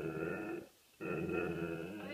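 A chocolate Labrador retriever vocalizing in two long, even-pitched groaning 'answers': the first ends about half a second in, the second starts about a second in. It is her reply to being asked what she wants.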